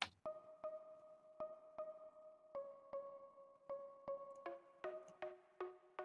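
Synthesizer pluck layer playing a repeating pattern of short, quiet plucked notes, about two and a half notes a second; about four and a half seconds in, lower notes join the pattern.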